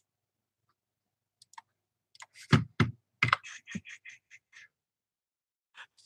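Computer keyboard typing: a short run of key presses starting about two seconds in and lasting about two seconds, with a few faint clicks before it.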